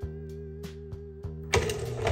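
SWTPC PR-40 dot-matrix printer's print carriage returning in response to a carriage-return character: a short burst of mechanical clatter starting about one and a half seconds in, over background music.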